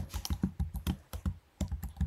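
Typing on a computer keyboard: a quick, irregular run of keystrokes with a short pause a little past halfway.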